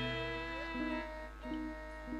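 Quiet instrumental passage of a Javanese langgam (campursari) band without vocals: held tones, with a note gliding upward near the start and a few short notes about a second in.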